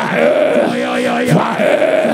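A preacher's voice calling out long, drawn-out cries in prayer, one about every second and a half, each rising and then held.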